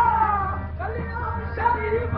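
Qawwali music: a high voice sliding and falling in pitch in long melismatic lines, over a steady low drone.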